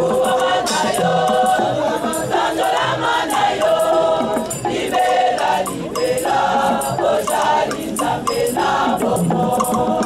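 A group of women singing together as a choir, with a rattle keeping a steady beat.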